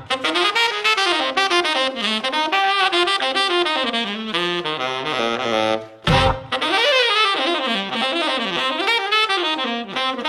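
Saxophone playing quick jazzy runs of notes that climb and fall. A low thump comes about six seconds in.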